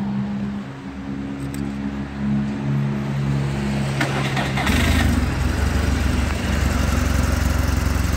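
A click about four seconds in, then the 2007 BMW R1200GS's boxer twin engine starts and settles into a steady idle with an even low beat.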